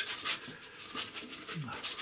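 Stiff bristle brush scrubbing acrylic paint onto gesso-primed watercolour paper: a quick run of rubbing strokes, about four or five a second.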